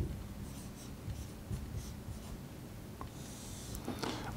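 Quiet scratching of a marker pen writing on a whiteboard: several short strokes as figures are written, then one longer stroke near the end as a vertical line is drawn.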